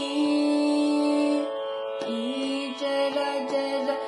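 A young woman singing Carnatic classical music. She holds one long note for about a second and a half, then moves into a phrase of bending, ornamented notes, over a steady drone.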